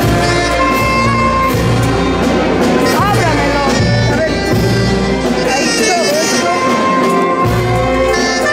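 Live brass band playing dance music, horns carrying the melody over a steady pulsing bass.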